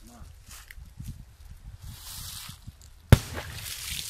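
A Piromax Crash (PXP306) firecracker, a 1.2 g charge, goes off in shallow stream water about three seconds in: a single sharp bang.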